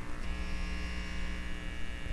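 Steady electrical hum and buzz of a neon sign, a low mains-hum drone with a higher buzzing tone joining about a quarter second in.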